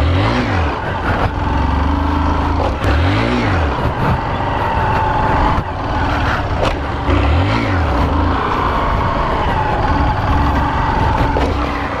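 Honda CG 125 Fan's single-cylinder four-stroke engine running hard during a wheelie-circle attempt, the revs rising and falling several times as the throttle is worked.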